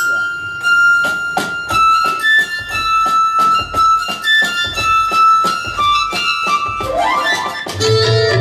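Instrumental interlude played live on electronic keyboards: a sustained lead melody holding and stepping between notes, with an upward pitch-bend glide near the end, over regular hand-percussion strikes.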